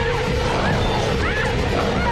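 Film soundtrack of a chaotic fight: crashing and smashing over a music score, with short shrill chirping cries.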